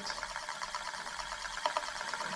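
Metal Euler disk rolling and wobbling on its curved mirror base late in its spin-down, a steady fast whirr.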